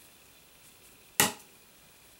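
A single sharp tap about a second in, loud and brief, over faint soft swishes of a powder brush sweeping across skin.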